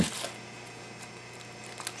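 Small plastic toy cup being handled: a sharp click right at the start, then quiet faint rustling and a few light ticks near the end.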